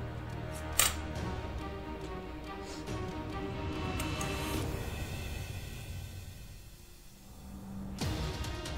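Background music with sustained tones. About a second in comes one sharp snip from small scissors cutting beading thread, with a few fainter ticks later.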